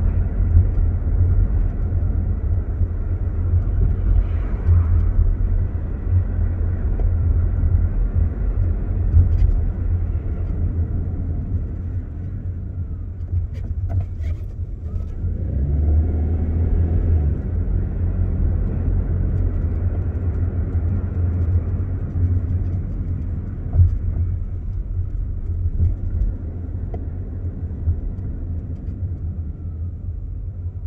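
Car driving, heard from inside: a steady low rumble of engine and tyres on the road. It swells briefly about halfway through, with a few faint clicks just before, and eases off near the end.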